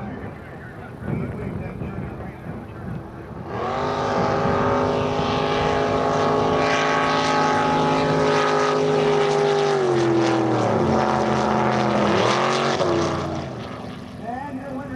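Racing jet boat engines launching for a drag run: a loud, steady high-revving engine sound starts abruptly a few seconds in. Its pitch drops twice near the end as the boats come off the throttle, and it fades. Voices and background sound are heard before the launch.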